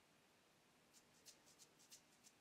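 Near silence: room tone, with a few very faint ticks in the second half.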